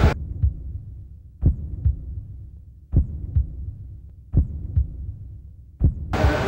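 Heartbeat sound effect: slow pairs of low thumps, lub-dub, repeating about every one and a half seconds over a faint steady hum.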